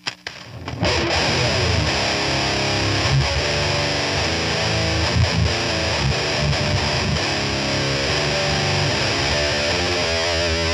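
Electric guitar played through the high-gain distortion of an Armored Amplification Sabot 50-watt amp head, an ESP M2 Custom with a Seymour Duncan Nazgul bridge pickup. A few picked notes, then continuous heavy riffing from about a second in.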